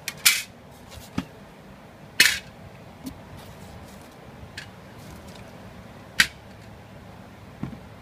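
Scattered handling knocks and scrapes over a low steady background, with three louder sharp ones: about a quarter second in, about two seconds in, and about six seconds in.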